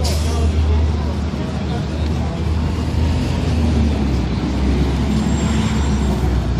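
City street traffic: a steady low engine rumble from road vehicles, with a short hiss right at the start and the voices of passers-by talking.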